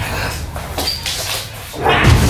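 A German Shepherd making vocal sounds while gripping a decoy's padded bite sleeve in protection bite work. Music comes back in loudly just before the end.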